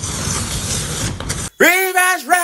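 Flames engulfing an electric bike, heard as a steady rushing hiss. It cuts off about one and a half seconds in, and a high, pitch-shifted cartoon voice follows.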